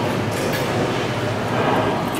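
JoinPack S555T1 semi-automatic strapping machine running with a steady mechanical hum while its thin plastic strap is drawn out and looped around a bundle.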